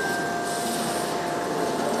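Steady, even rushing noise with a faint thin hum in it, the room sound of a large, empty hotel lobby. It starts abruptly at a cut.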